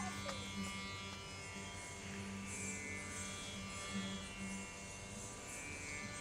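A steady drone held on one low note, rich in overtones, as the instrumental bed of Indian devotional music between a recited verse and the next sung line.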